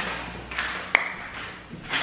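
A single sharp click with a short ring about a second in, after a brief rustle.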